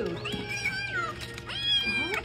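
Kitten meowing twice, high-pitched, hungry for food.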